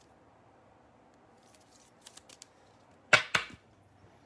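A trading card handled in a rigid plastic toploader: a few faint light clicks, then two sharp clacks about a fifth of a second apart near the end.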